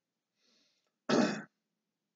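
A person clearing their throat once, a short voiced burst, after a faint breath in.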